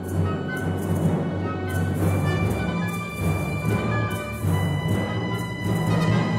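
Symphony orchestra playing a contemporary classical piece: sustained low notes under a dense texture of held tones and repeated struck notes, with a marimba played with mallets.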